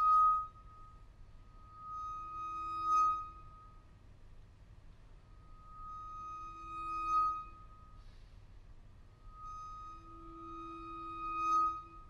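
Vibraphone bars bowed, giving long sustained ringing notes, a high note over a quieter low one. Each note swells up to a peak and falls away, four times, every three to four seconds.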